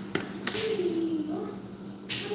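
Two sharp taps on a wooden tabletop as a child plays with a plastic kinetic-sand tool, close together near the start, followed by a short wordless voice sound.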